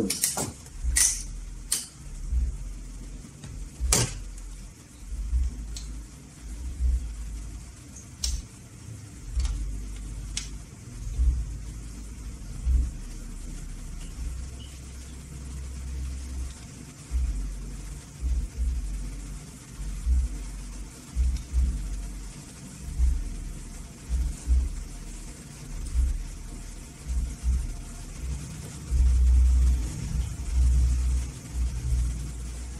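A few sharp clicks and taps, near the start and again around four, eight and ten seconds in, from an analog multimeter's test probes and leads being handled against the TV's metal backlight panel and LED strips. Under them runs a low, uneven rumble that comes and goes.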